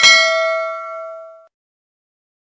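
Notification-bell sound effect of a subscribe animation: one bright ding that rings and fades out after about a second and a half.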